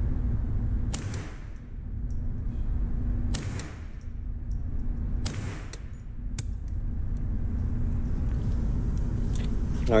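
Armalite AR-7 .22 LR rifle firing in an indoor range: about four separate shots a second or two apart, each ringing briefly off the concrete, over a steady low rumble.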